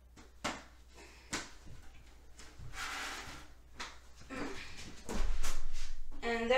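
Cardboard box being opened by hand: sharp cardboard clicks and taps, a rasping tear about three seconds in as the taped flap comes free, and a louder dull thump near the end.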